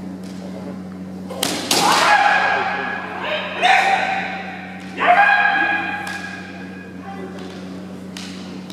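Bamboo shinai clacking together about a second and a half in, followed by three long, loud kiai shouts from kendo fighters, each held for about a second. A steady low hum runs underneath.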